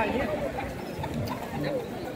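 Mostly voices: a man's brief words at the start, then quieter talk of people in the street.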